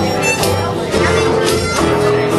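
Live acoustic band playing an instrumental passage between sung lines: held melody notes over a steady rhythm.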